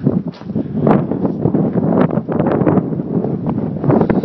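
Loud wind buffeting the microphone in uneven gusts, with short rumbling bursts throughout.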